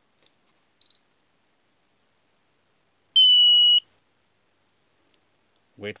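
Electronic beeps as an RC transmitter fitted with an OrangeRx DSM2/DSMX module is switched on with its bind button held: a faint short chirp about a second in, then one loud, steady, high-pitched beep lasting under a second.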